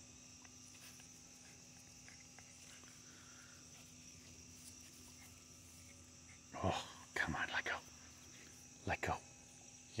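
Faint steady chirring of crickets in the grass. A few short, quiet voice sounds break in about two-thirds of the way through and again near the end.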